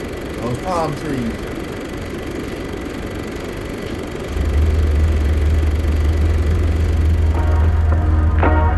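Old convertible's engine idling with a steady deep rumble that starts about four seconds in, over a noisy background. Near the end, the car radio begins to sound.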